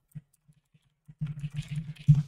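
Typing on a computer keyboard: a few separate keystrokes, then a quick run of keys from just over a second in.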